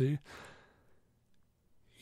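A man's short, breathy sigh just as his last word ends, then near silence for over a second.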